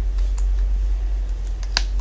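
A few sharp clicks and ticks from a cured resin piece being flexed and handled in its silicone mould, the loudest near the end, over a steady low hum.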